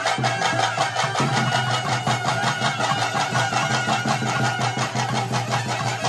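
Traditional Tulu nema ritual music: a double-reed pipe holding notes over a steady low drone, with fast, even drumbeats.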